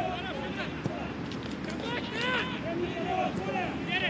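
Pitch ambience at a football match: players' distant shouts and calls over a steady background murmur.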